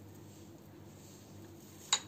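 Faint room tone; near the end, one sharp click of hard objects knocking together as the plastic modak mould is handled.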